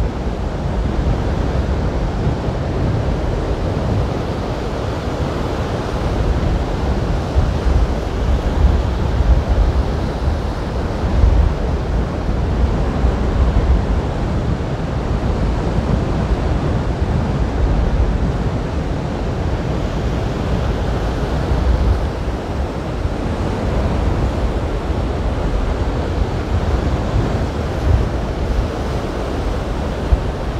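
Rough sea surf breaking and washing ashore in a steady rush, with gusty wind buffeting the microphone.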